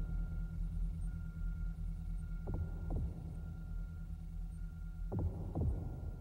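Heartbeat sound effect: three slow double thumps, about two and a half seconds apart, each pair's two beats about half a second apart, over a steady low electronic hum with a faint high tone.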